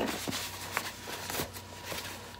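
Rustling and crinkling of a printed cosmetic bag being handled and opened by hand, with a few sharp crackles along the way.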